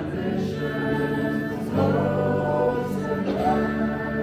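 Live worship music: sung voices holding slow notes over acoustic guitar and electric bass, the melody changing notes twice.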